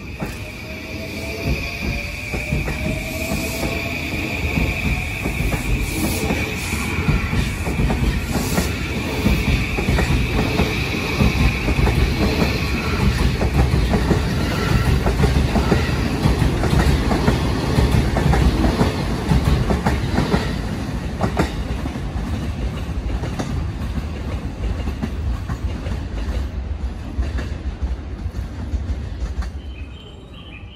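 Electric commuter train departing and accelerating past: a rising motor whine in the first few seconds and a high steady tone for about the first third, over wheels rumbling and clacking on the rails. The sound builds to its loudest around the middle, then eases off as the train moves away.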